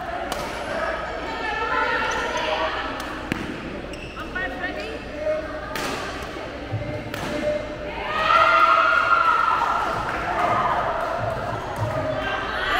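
Badminton rally: several sharp racket strikes on the shuttlecock at irregular gaps, echoing in a hall, over people's voices that get louder about two-thirds of the way through.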